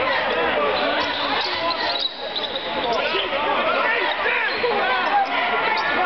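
Basketball arena crowd noise, many voices talking and calling out at once, with a basketball being dribbled on the hardwood court.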